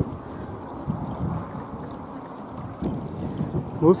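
Outdoor open-air noise: wind on the microphone over a low, even rumble.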